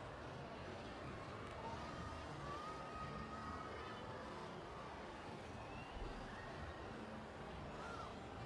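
Steady murmur of a large arena crowd, with a few faint brief tones over it and a soft low thump about six seconds in.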